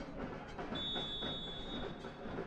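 Referee's whistle blown for the kickoff: one long steady high blast starting under a second in, over faint open-stadium ambience.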